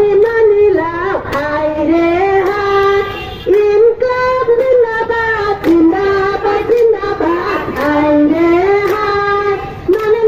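Women singing a song together, a sustained melody with held and gliding notes, with hand claps about once a second.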